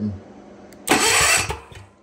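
Click of the starter solenoid, then a Generac portable generator's electric starter cranking the engine in one short burst of about two-thirds of a second, switched by a remote-controlled relay. The cranking stops without the engine running on.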